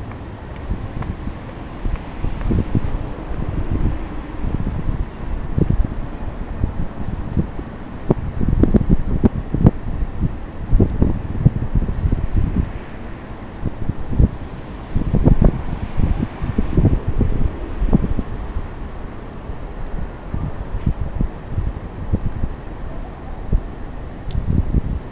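Wind buffeting the camera microphone in irregular low rumbling gusts, strongest about a third of the way in and again past the middle.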